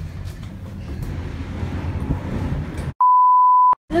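A steady low rumble of the ferry's machinery, then, about three seconds in, a single flat 1 kHz censor bleep lasting under a second. The rest of the audio is cut to silence around the bleep.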